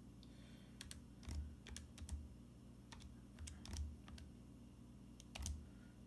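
Keys of a TI-89 Titanium graphing calculator pressed one after another: a dozen or so faint, irregular clicks, some with a soft thud.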